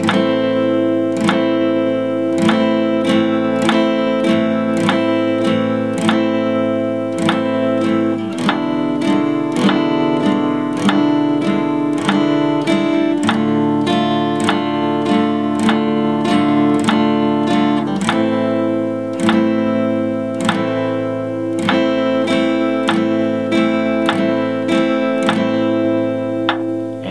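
Black Epiphone cutaway acoustic guitar strumming chords slowly and evenly at 50 beats per minute, down-strums on the beats and up-strums on the 'ands'. The chord changes about eight seconds in, again about thirteen seconds in, and returns to the first chord about eighteen seconds in.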